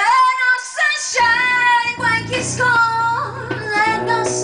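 A live female voice singing long, sliding held notes with no clear words, over guitar accompaniment. The guitar drops out for about the first second, then comes back in.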